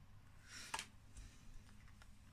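Near silence, with one faint short rustle ending in a sharp click about three quarters of a second in: tarot cards being handled as the deck is turned through.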